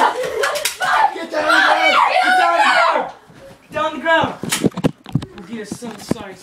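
Voices shouting and yelling in a small room, followed by a few sharp knocks about four and a half seconds in.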